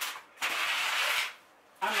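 Small finger-pump spray bottle misting: a short squirt at the start, then a hiss of about a second.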